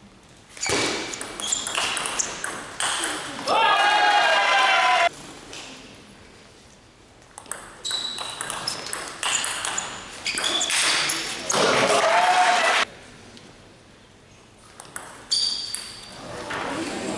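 Table tennis ball clicking off bats and table through two rallies, each ending in a loud, drawn-out shout about a second long.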